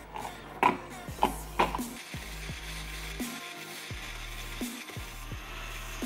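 Background music, with a few sharp knocks in the first two seconds as a plastic personal-blender cup is handled and set on its base.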